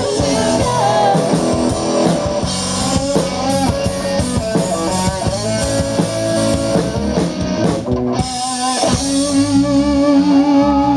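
Live rock band playing: electric guitar, bass guitar and drum kit. About eight seconds in, the drums and bass briefly drop away, then a long wavering note is held.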